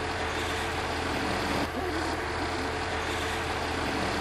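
A steady vehicle engine running with a low hum and no pauses, its pattern repeating every two to three seconds.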